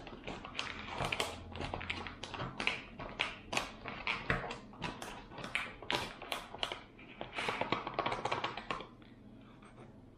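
A spoon stirring hot water into freeze-dried chilli inside a foil food pouch: irregular scraping clicks from the spoon and crinkling of the pouch, a few a second, stopping near the end.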